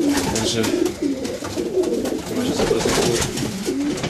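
Several racing pigeons cooing together in a loft, their low warbling calls overlapping continuously, with a few light clicks among them.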